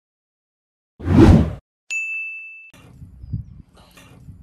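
Editing sound effects: a short, loud whoosh about a second in, then a bright ding that holds for most of a second. After it comes low background noise with a few soft knocks.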